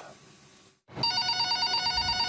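A telephone ringing: a steady, rapidly trilling ring that starts about a second in, after a moment of near silence.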